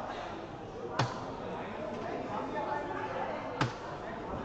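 Two soft-tip darts striking an electronic dartboard, each a single sharp clack: one about a second in and one near the end, each scoring 20. A steady murmur of background voices runs underneath.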